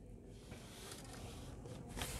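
Faint pencil and drafting sounds: a pencil moving over drawing paper and a plastic set square being slid across the sheet.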